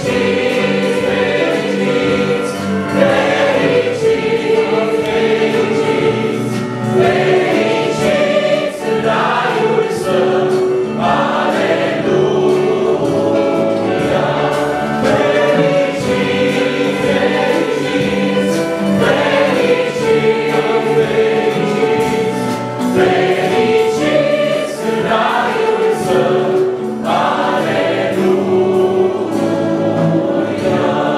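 A small mixed group of men's and women's voices singing a Romanian Christian hymn of praise in harmony into microphones, amplified through the hall's sound system.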